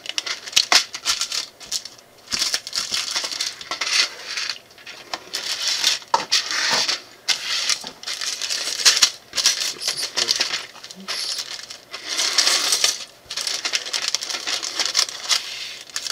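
Small plastic building bricks clattering and rattling as they are tipped out of plastic bags into plastic bowls and handled, with the plastic bags crinkling, in repeated bursts.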